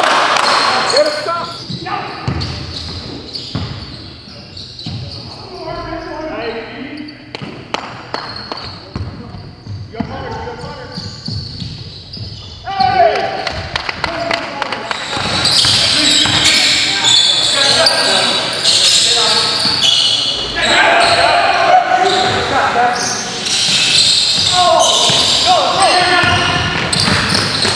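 Basketball game sounds in a large gym: a basketball bouncing on the court floor amid shouts and hand claps, with the echo of the hall. Quieter for the first half, then louder and busier from about thirteen seconds in.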